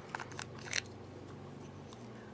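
A few faint, short clicks and taps in the first second from handling a small plastic eyeshadow jar, over a low steady room hum.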